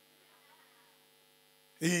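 A pause in amplified speech: a faint, steady electrical hum from the sound system, with a faint voice-like trace about half a second in, and a man's amplified voice returning briefly near the end.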